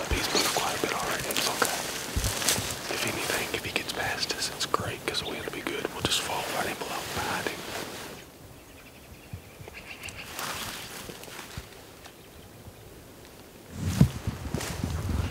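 People whispering to each other for about eight seconds, then it goes much quieter.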